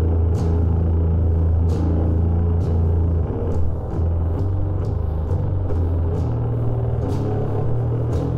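Slow, heavy sludge metal: a sustained, low, distorted riff with drum and cymbal hits every second or so. The riff moves up to a higher note about six seconds in.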